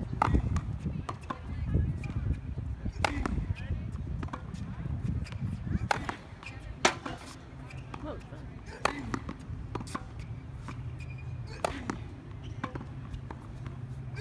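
Tennis ball being struck by rackets and bouncing on a hard court during a rally: a series of sharp pops, one every one to three seconds.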